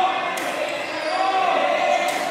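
Badminton racket strokes on a shuttlecock: a sharp smash about a third of a second in and another hit at the very end. Spectators' voices murmur through the hall.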